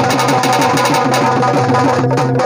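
Rapid hand-played dholak drumming in a folk music ensemble, over a steady held instrumental note that breaks off briefly near the end.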